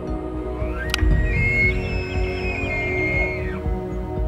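Theme music for a show intro, with a sharp hit about a second in and a high whistling tone that glides up, holds for about two and a half seconds, and falls away.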